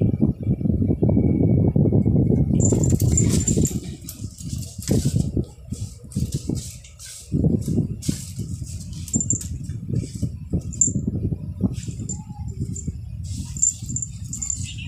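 A cat scuffling and rolling about on a hard floor close to the microphone, with low rustling and thumps, loudest in the first few seconds. The small metal charm on its collar jingles in short high tinkles again and again from about three seconds in.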